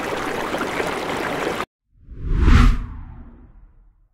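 Steady rushing-water sound effect that cuts off suddenly, then after a brief silence a whoosh that swells into a deep boom and fades away: an end-card transition effect.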